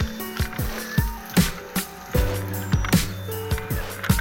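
Electronic music with a steady beat of deep kick drums.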